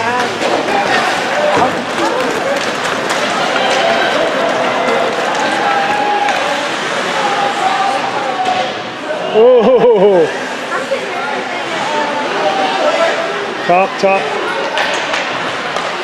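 Spectators talking in an ice rink, with one loud, wavering shout about nine and a half seconds in and a couple of sharp knocks about two seconds before the end.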